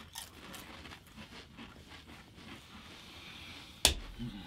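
Several people chewing Pringles potato crisps with mouths closed, faint irregular crunching, and one sharp knock near the end.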